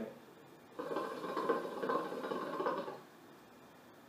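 KM Single Heart hookah's water base bubbling as smoke is drawn through the hose: a steady gurgle starting about a second in and lasting about two seconds.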